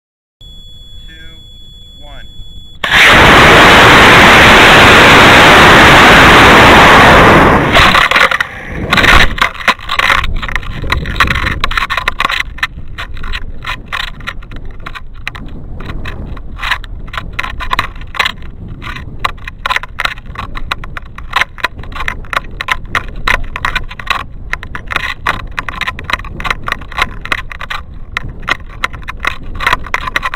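Onboard-camera audio of an MPC Red Giant model rocket flying on a C6-3 motor. About three seconds in, a very loud rush of motor and wind noise that clips the recording starts at liftoff and lasts about five seconds through the burn and coast, breaking off near eight seconds at the ejection charge. After that, descending under its parachute, the camera picks up steady wind with irregular knocks and rattles.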